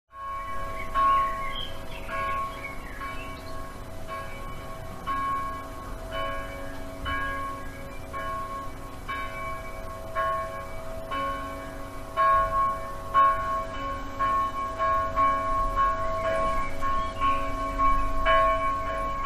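A church bell tolling, one bell with the same ringing pitch struck about once a second, each stroke ringing on into the next. The strokes come a little faster in the last few seconds.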